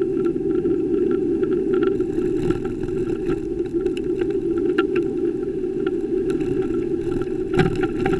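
Steady rushing wind and road noise from a moving bicycle, picked up by the bike-mounted camera, with a sharp knock near the end.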